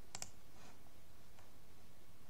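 Two quick, sharp clicks of a computer mouse button just after the start, then a couple of much fainter clicks over low, steady room noise.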